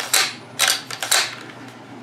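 Cocking action of a Norinco T97 Gen III bullpup rifle being worked by hand: about four sharp metallic clacks over a second or so as the charging handle and bolt go back and forward.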